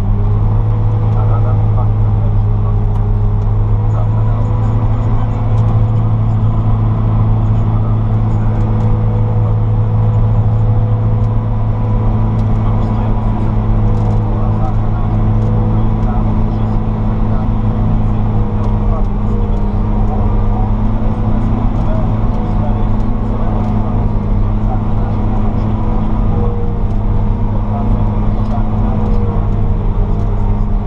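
Cab-interior sound of a Claas Jaguar 870 self-propelled forage harvester at work, its engine and chopping drivetrain running at steady working speed with a deep, even hum.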